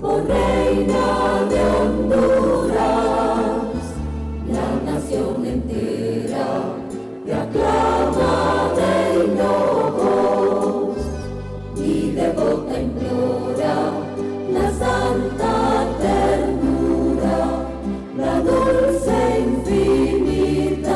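Church choir singing a hymn in parts, with low bass notes held underneath that change every second or two.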